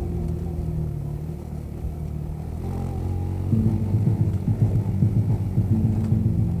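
A motorcycle engine running with a low, steady note that gets louder and rougher about three and a half seconds in.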